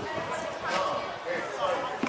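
Footballers and coaches calling out to each other across the pitch during play, voices indistinct with no clear words.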